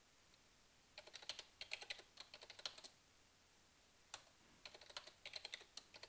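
Faint computer keyboard typing in two short runs of keystrokes, starting about a second in and again from about four seconds: a password being typed, then typed again to confirm it.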